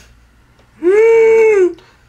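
A girl's single drawn-out vocal sound, a high held vowel that rises a little, holds and falls away, lasting just under a second and starting about a second in.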